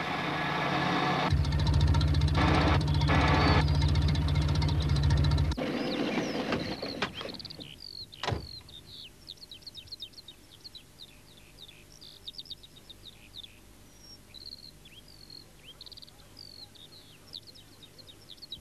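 Small van's engine revving hard as its wheels fail to pull it out of boggy mud, dying away after about six seconds. A single thump follows a couple of seconds later, then faint birdsong chirping.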